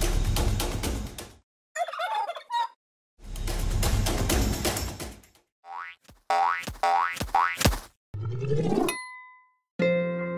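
A string of edited intro sound effects. A beat-driven music clip stops abruptly, then comes a short turkey gobble and more music. A rapid run of rising sweeps and a springy boing follows, ending in a brief steady ding.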